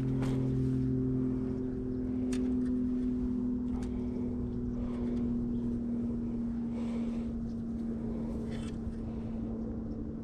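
A steady motor drone with a low hum and overtones, holding one pitch and slowly fading, with a few faint clicks over it.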